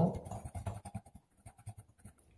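Metal spoon stirring brown sugar and cinnamon powder in a ceramic bowl: a quick run of faint, gritty scrapes that thins out after about a second, followed by a couple of light ticks.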